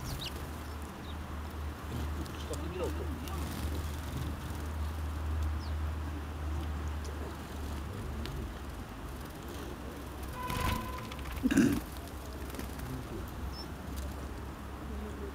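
A few faint, brief house sparrow chirps over a steady low outdoor rumble. About eleven seconds in comes a short, louder pitched sound, the loudest moment.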